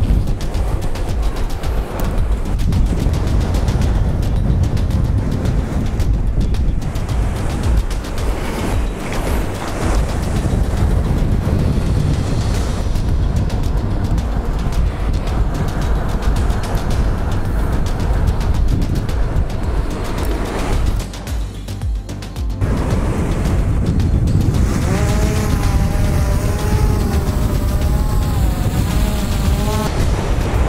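Wind buffeting the microphone in a steady low rumble, with background music. Near the end a quadcopter drone's motors spin up with a wavering whine as it lifts off.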